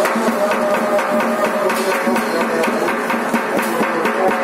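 Music with fast, steady percussion strokes over held tones.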